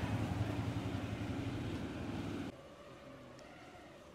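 A motor vehicle engine running close by, a steady low drone, which stops abruptly about two and a half seconds in, leaving faint street background.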